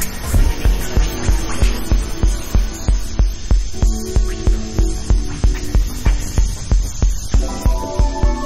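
Electronic music: a deep bass pulse repeating about four times a second under steady, humming held tones, with more tones joining near the end.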